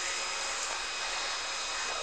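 A steady, even hiss of background noise with a few faint thin whines in it, unchanging and with no distinct event.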